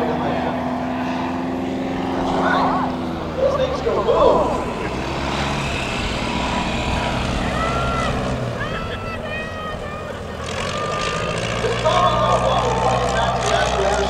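A Piper Super Cub's engine and propeller drone steadily overhead. The pitch changes with the throttle about four seconds in and again near ten seconds.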